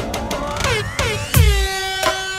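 DJ-mix intro sound effects over electronic music: several horn-like blasts that fall in pitch, a steadily rising sweep, and a heavy bass hit about one and a half seconds in.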